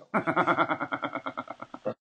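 A man laughing, heard as a fast, even run of pitched pulses, about ten a second, that cuts off suddenly just before the end.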